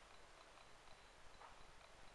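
Near silence: faint room hiss with a few soft ticks.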